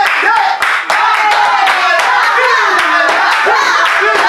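A group of people clapping their hands steadily, with voices singing and calling over the claps and no backing music underneath.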